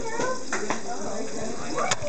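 People talking, with a few short knocks of a knife striking the cutting surface as a fish is cut into pieces.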